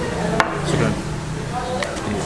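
A single sharp knock of tableware on a table about half a second in, with a fainter click near the end, over a low steady hum.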